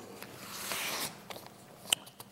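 Sheets of paper rustling as they are handled at a lectern: a short rustle, then a single sharp tap near the end.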